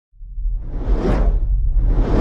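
Intro whoosh sound effect over a deep rumble: a swell that rises and peaks about a second in, with a second whoosh starting near the end.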